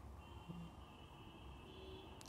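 Near silence: room tone in a pause between speech.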